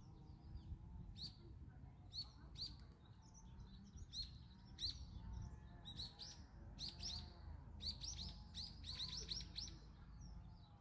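Birds chirping: short, sharp, downward-sliding chirps that come more often and in a quick run in the last few seconds, over a faint low background rumble.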